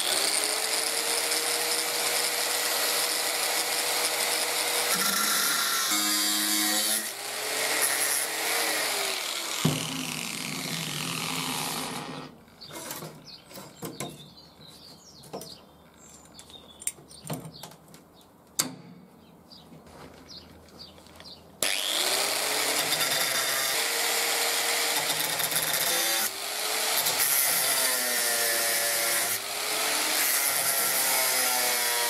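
Angle grinder grinding a metal blade strip, its motor pitch sagging and recovering as the disc bites into the metal. It stops for about ten seconds midway, leaving only a few clicks and taps of handling, then starts grinding again.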